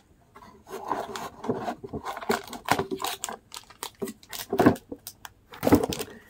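A cardboard candy gift box and its packaging being handled and opened: a run of irregular crinkles, rubs and clicks, with a couple of louder knocks near the end.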